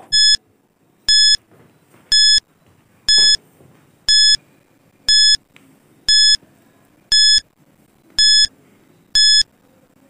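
Countdown-timer beeps: ten short electronic beeps of the same pitch, one a second, ticking off a ten-second countdown.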